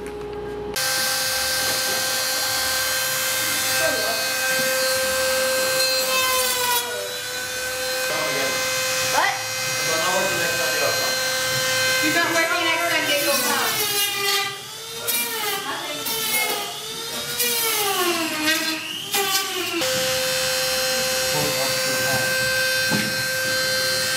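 Eerie electronic drone laid over the footage: a steady hum over a bright hiss, with wailing tones that waver up and down in pitch through the middle before the steady hum returns.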